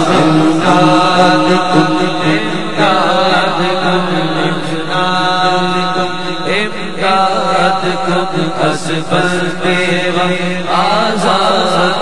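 Male voice singing an Urdu manqabat (devotional Sufi song) through a microphone and PA system, holding long wavering melismatic notes over a steady low drone.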